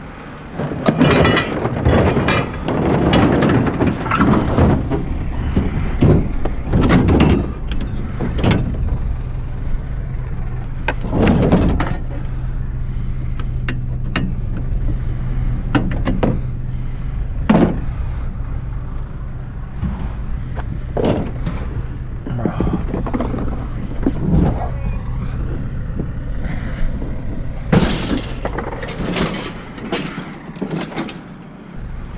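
Repeated knocks, clunks and scrapes of a jammed refrigerator being pried and shifted loose in a pickup truck's bed liner, with a steady low hum starting about eight seconds in.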